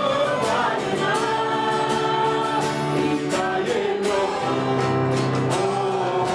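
A worship band performing a song: several voices singing together over strummed acoustic guitars and a keyboard, with a steady beat.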